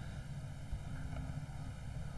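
Steady low background rumble with a faint hiss, with no distinct event standing out.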